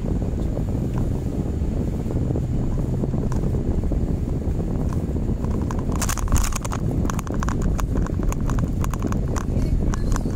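Steady rumble of a car driving, heard from inside the cabin. About six seconds in, a run of rapid, irregular clicks and rattles starts and keeps going.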